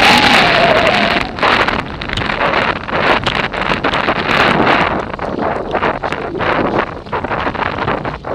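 Wind buffeting the microphone of a camera on a moving road bike: a loud, steady rush that dips and surges in gusts. A brief wavering tone sounds over it in the first second or so.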